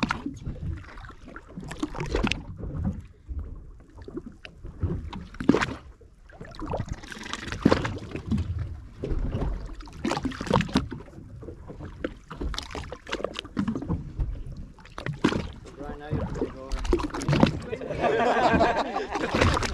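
Water lapping and slapping against the hull of a drifting boat in irregular splashes, with low voices nearby.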